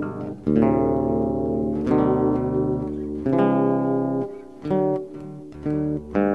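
Solo acoustic guitar playing an instrumental passage, plucked chords struck about every second and a half and left to ring and fade.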